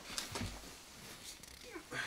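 Quiet workshop room sound with a few light clicks and a soft low thump as sawn wooden offcuts are handled, and a brief faint vocal sound near the end.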